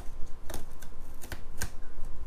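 Scissors cutting along packing tape on the seam of a cardboard box, making a few sharp, scratchy clicks. The loudest come about half a second in and again near a second and a half.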